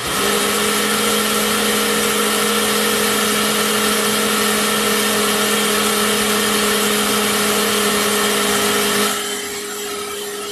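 A kitchen appliance's electric motor switches on suddenly and runs loud and steady with a constant hum. About nine seconds in it drops to a lower level and keeps running.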